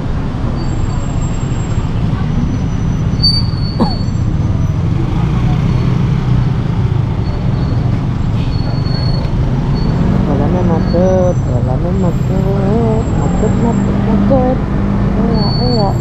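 Steady low rumble of wind and street traffic, heard from a moving electric scooter. A voice comes in faintly from about ten seconds in.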